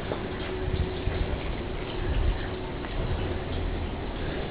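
Outdoor background noise: an irregular low rumble with faint light ticks, and a faint steady hum that fades out a little under three seconds in.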